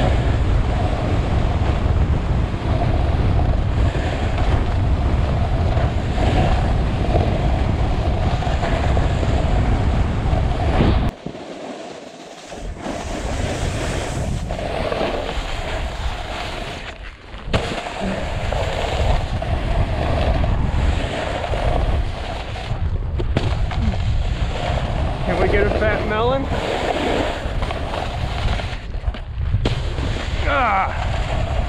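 Wind rushing over a body-mounted action camera's microphone while a snowboard slides and scrapes over slushy spring snow at speed. The rumble drops out briefly about eleven seconds in, then returns.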